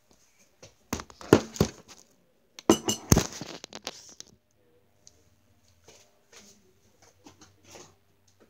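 Handling noise from the recording phone being moved and set down: two bursts of knocks, bumps and rubbing, about a second in and again around three seconds in, followed by faint scattered clicks.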